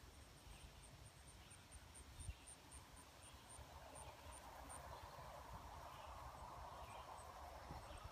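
Near-silent outdoor ambience: a faint, high insect chirp repeating about four times a second over a low rumble.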